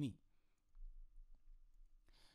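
Low room hum with a single faint computer-mouse click a little over a second in.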